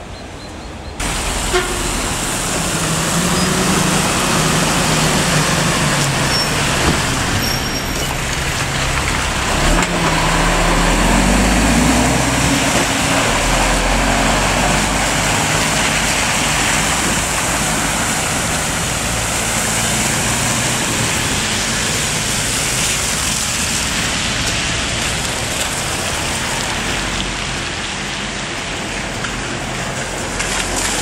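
Road traffic on a wet street: vehicles passing with tyres hissing on wet asphalt. Under the hiss a heavy vehicle's engine runs, and its low rumble is strongest in the middle of the stretch.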